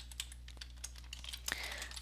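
Typing on a computer keyboard: a quick, irregular run of soft key clicks.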